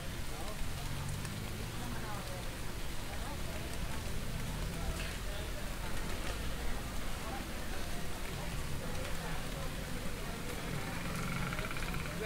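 Street ambience: indistinct voices of passers-by over a steady hiss and a low traffic rumble.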